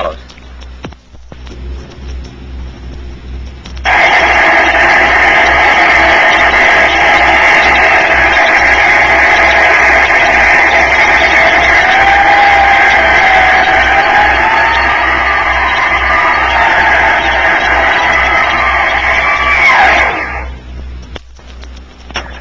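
Turbonique Model 2 microturbo gas turbine, burning monopropellant fuel on a brake dynamometer. It lights up suddenly about four seconds in with a loud roar while held stalled, then starts turning with a whine that wanders in pitch as its speed is changed and rises near the end. The run is stopped with the dynamometer brake on at about twenty seconds, so the coast-down is abrupt: the whine drops quickly and the roar cuts off.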